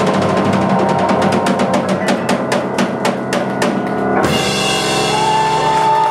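Live jazz band (drum kit, electric bass and keyboard) playing the last bars of a tune: a run of rapid drum strokes over the band, then a full-band hit about four seconds in and a held final chord.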